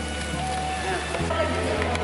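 Background music over the steady hiss of dough frying in hot oil in a metal wok.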